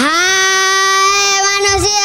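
A child singing one long held note through a microphone and loudspeakers, sliding up into it at the start.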